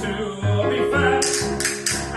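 Choir singing with bowed cello accompaniment, the cello holding sustained low notes under the voices.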